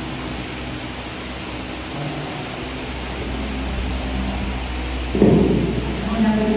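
Room noise: a steady low rumble under a noisy hiss, with faint distant voices. About five seconds in, a louder muffled burst breaks in.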